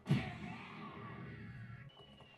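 Faint anime soundtrack: a sudden cartoon hit as a sword strike lands, fading away over about a second into quieter sound from the episode.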